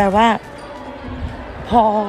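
A woman speaks two short phrases, with a low rough rumble and soft thumps between them from a handheld phone being carried and jostled while she walks.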